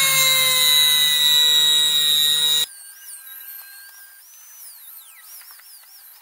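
Small rotary tool with a thin cut-off disc cutting into an AA battery's metal casing: a loud high whine over a grinding hiss, its pitch sagging slightly as the disc bites. The whine cuts off abruptly about two and a half seconds in, leaving a much quieter stretch with a faint wavering high tone.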